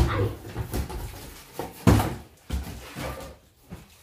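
Cardboard box being opened by hand: a run of knocks, scrapes and rustles as the top flaps are worked open, with the loudest thump about two seconds in.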